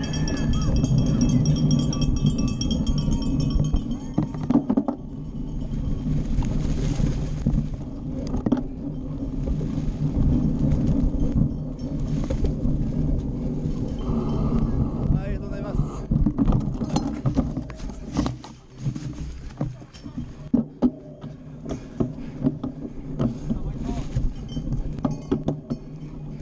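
Cyclocross bike rattling and clattering over a rough dirt course, the knocks coming thick and sharp in the second half, over a steady low rumble of riding noise.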